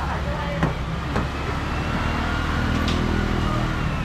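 Steady low mechanical drone under market noise, with a few sharp knocks from a knife cutting fish on a board.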